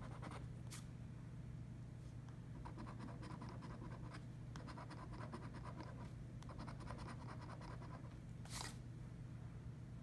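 A coin scraping the silver coating off a scratch-off lottery ticket in quick back-and-forth strokes, coming in short runs, with one louder scrape near the end.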